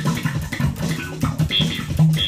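Electric bass guitar played solo: a quick run of short plucked notes with a sharp attack on each.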